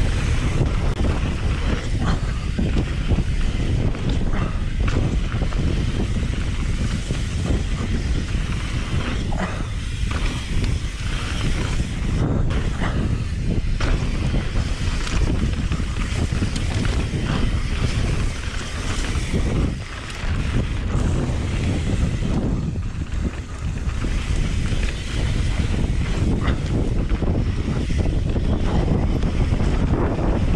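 Wind buffeting the microphone over the rumble of a mountain bike descending a dirt trail at speed: tyres rolling over dirt and gravel, with the bike rattling and knocking over bumps.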